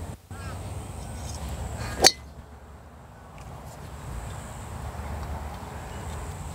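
A golf club striking a ball from a full swing: a single sharp crack about two seconds in, over a steady rumble of wind on the microphone.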